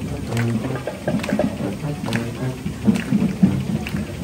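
Marching band playing, brass holding pitched notes over drum strikes that land about once a second.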